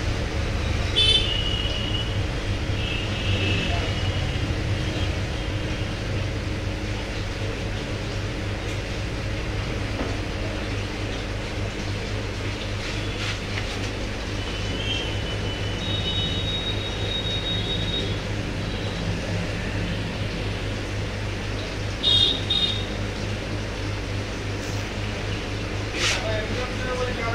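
Steady low hum and hiss of background noise, with a few short, high steady tones about a second in, around the middle and near the end.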